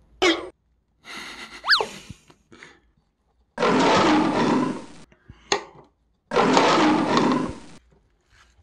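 A tiger roar sound effect, played twice, each roar about a second and a half long. Before them come a couple of sharp clicks and a short swishing effect with a sliding tone.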